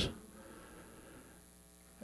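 Faint steady electrical mains hum in a pause between spoken words, with the last word's echo dying away at the start.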